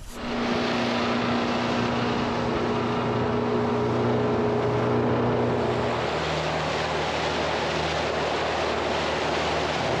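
Yamaha outboard motor running steadily, pushing an aluminium dinghy across open water, with a rush of water and wind. About six seconds in, the engine's hum shifts to a lower pitch.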